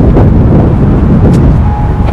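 Strong wind buffeting the phone's microphone: a loud, continuous low rumble.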